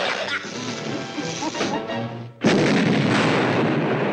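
Orchestral cartoon score, cut off about two and a half seconds in by a sudden loud cartoon explosion that goes on for over a second: a fired weapon blowing up a planet.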